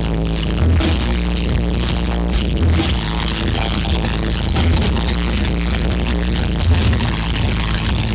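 Loud electronic dance music with a heavy, pounding bass, played over a DJ truck's stacked loudspeakers.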